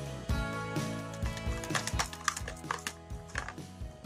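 Background music, with the quick, irregular clicking of a wire whisk beating a thin egg-and-milk batter against a plastic bowl, busiest in the second half.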